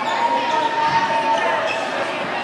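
Many voices talking at once in a gymnasium, with a steady held tone lasting about a second and a half near the start.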